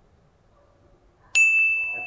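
A single bright ding sound effect, a bell-like tone struck suddenly a little over a second in and ringing on as it fades: the lie detector verdict cue, shown green for a truthful answer.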